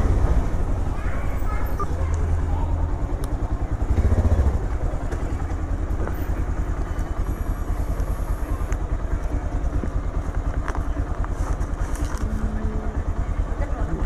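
Motorcycle engine running as the bike rides slowly down a lane and pulls up, then idling with a steady, rapid pulse from about five seconds in.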